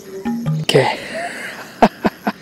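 A man's surprised exclamation, then near the end a few sharp bursts of breath, a laugh beginning, as a fish unexpectedly strikes his lure.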